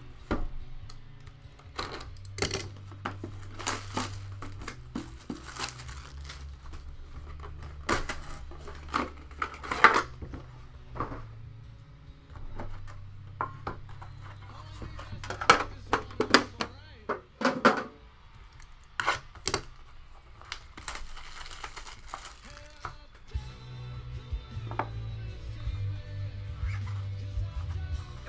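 Hands opening a shrink-wrapped metal card tin: plastic wrap crinkling and many short clicks and knocks as the tin and lid are handled, over low background music.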